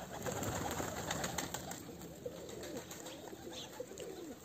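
Flock of domestic pigeons cooing, many short overlapping calls, with light scattered clicks as they peck at a feeding trough.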